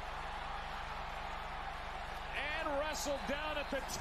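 Televised football broadcast audio: steady stadium crowd noise, with a commentator's voice coming in after about two seconds.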